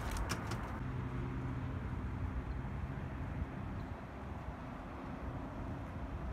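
A motor vehicle engine running with a steady low hum, after a few handling clicks in the first second.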